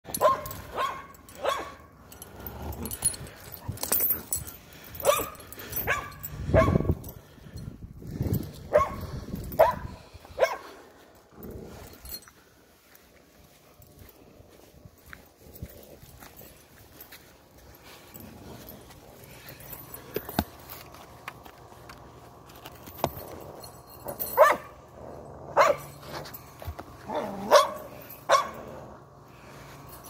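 A dog barking repeatedly: bunches of short, sharp barks through the first ten seconds or so, a quieter stretch, then more barks near the end.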